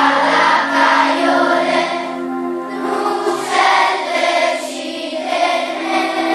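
Children's choir singing together in held, sustained phrases.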